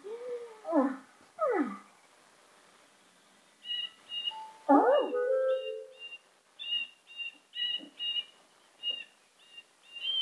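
Cartoon soundtrack heard through computer speakers: a few falling sliding tones in the first two seconds, then after a short pause a cartoon blue jay's short high chirps, about two a second, with a swooping note and a held tone among them.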